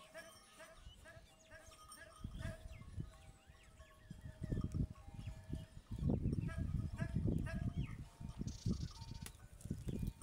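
Outdoor ambience in an open field: many short, high chirping calls throughout, with loud gusty low rumbling from about four seconds in.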